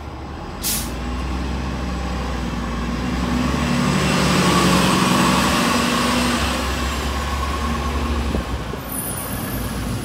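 An Orion V diesel transit bus pulling away from a stop. A short hiss of air is let out under a second in, then the engine rises as the bus accelerates off, loudest around the middle, and eases as it moves away.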